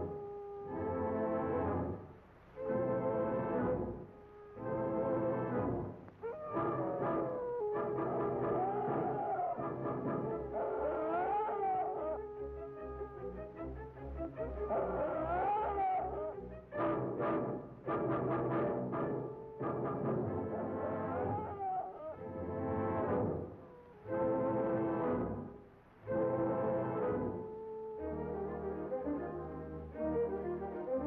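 Orchestral film score, with French horns and brass playing swelling chords that repeat about every one to two seconds and some wavering higher lines in the middle.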